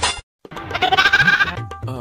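A short, wavering animal bleat, like a cartoon sound effect, starts about half a second in and lasts about a second, after a brief silence. Music starts up near the end.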